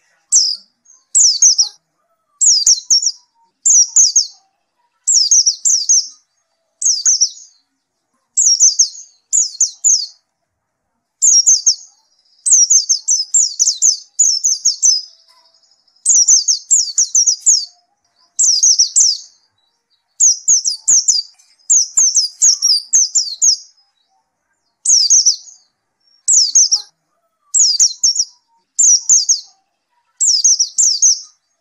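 White-eye (pleci) singing non-stop: short, high twittering phrases under a second long, repeated about once a second with brief pauses, some running together into longer bursts.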